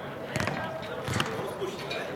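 A football kicked twice, about a second apart: two sharp thuds.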